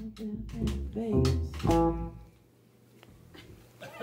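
A small live band, upright double bass and drum kit, playing the final notes of a song, with the last notes ringing out about two seconds in; then a near-silent pause.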